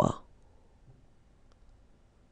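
Quiet room tone with a single faint click of a computer mouse about one and a half seconds in.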